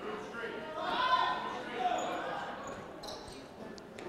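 Gymnasium background during a stop in a basketball game: faint voices from players and spectators calling out, strongest in the first half.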